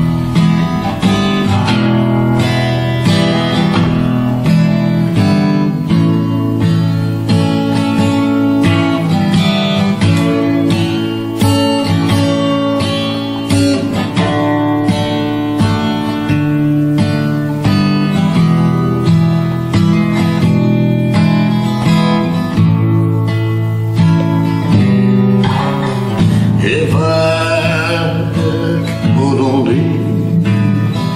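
Instrumental break in a country song: acoustic guitar strummed in a steady rhythm, with a melody line played over it and a wavering, held lead line in the last few seconds.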